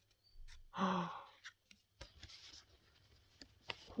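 Trading cards rubbing and sliding against each other as they are thumbed through by hand: soft scrapes and light ticks. A short breathy vocal sound comes about a second in, and a quick gasp near the end.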